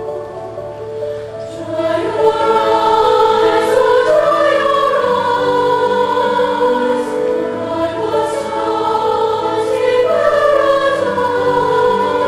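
Women's choir singing sustained, held chords, swelling louder about two seconds in.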